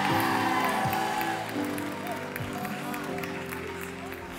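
Soft background worship music of held keyboard chords, slowly fading, with a few scattered claps from the congregation.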